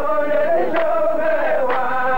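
A row of men chanting a qalta verse in unison as a long, drawn-out melodic line, with a sharp clap about once a second.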